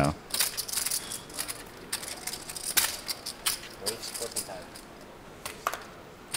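Poker chips clicking and clacking against each other in short, scattered clicks as players handle their stacks and a raise is pushed into the pot.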